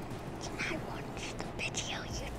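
A young girl whispering a few short, soft phrases.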